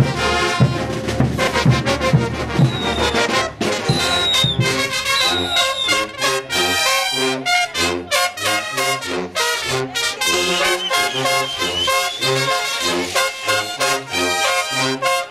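Bolivian brass band playing live: trumpets, trombones and tubas over bass drum and cymbals, with a steady beat and a bass line that comes out clearly about four seconds in.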